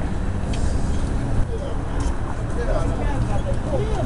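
Steady low rumble of city street noise with several people talking faintly in the background, and a couple of sharp clicks.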